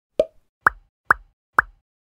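Four short upward-sweeping 'plop' pop sound effects about half a second apart over dead silence, added in editing as each line of on-screen caption text pops up.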